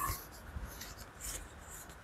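Faint rustling and light scraping of handwritten paper cards being handled on a table, with a few soft, scattered ticks.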